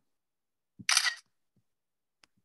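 A Mac's screenshot camera-shutter sound: one short shutter click about a second in, as a screenshot is taken with Command-Shift-4.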